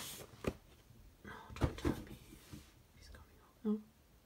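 Cardboard shoe boxes being handled and shifted: a sharp knock about half a second in, then a cluster of knocks and rustles a little past a second in.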